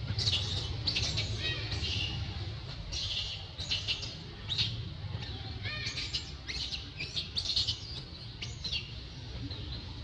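Baby macaque crying in a run of short, high-pitched squeals, over a steady low rumble.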